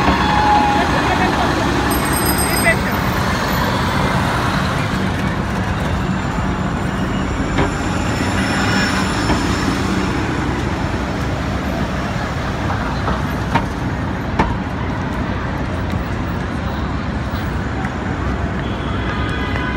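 City street traffic: cars and a bus passing with steady road noise, a low engine hum in the first half, and a few short sharp knocks.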